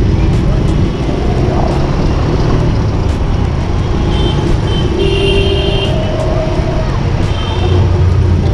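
Busy city traffic heard from a motorcycle moving through it: a steady rumble of engines and wind on the microphone, with a few brief high-pitched beeps about four and five seconds in.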